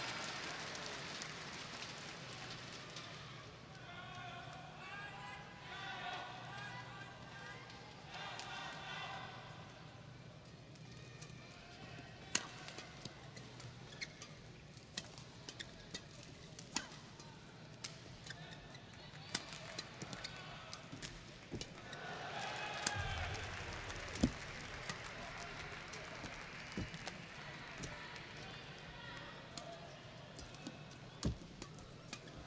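A badminton rally: sharp, irregular cracks of rackets striking the shuttlecock, with players' footfalls on the court, from about twelve seconds in. Before that, and again briefly near the end, voices from the crowd call out.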